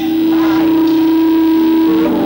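Live Congolese gospel band music: one long note held steady by the band, with the singing voice only faint.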